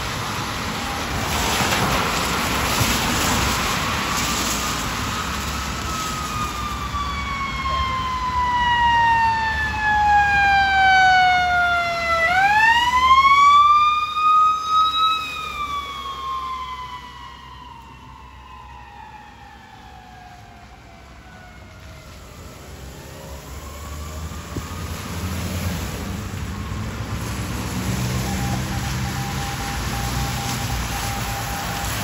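Ambulance siren on a wail setting: one tone gliding slowly up and down, loudest as it sweeps sharply back up about halfway through, then sliding down and fading as the ambulance goes by. Tyres of passing traffic hiss on the rain-soaked road before and after.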